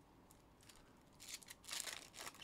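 Faint rustling and crinkling of a trading-card pack wrapper and cards being handled. It starts about halfway through after a near-silent moment and grows toward the end.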